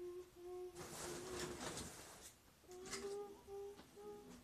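A boy humming a simple tune in held notes that step up in pitch, with rustling and handling noise over the middle of it.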